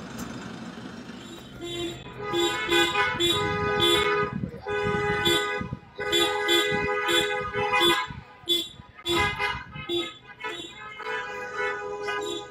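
Car horns in a slow-moving motorcade honking over engine and road noise, a run of short and longer toots on two pitches starting about two seconds in.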